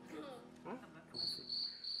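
Cricket-chirping sound effect: a steady, high, slightly pulsing trill that starts about halfway through. It is the usual comedy cue for an awkward silence.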